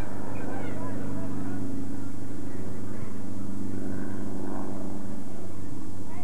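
Distant shouts and calls from soccer players and onlookers over a steady low drone.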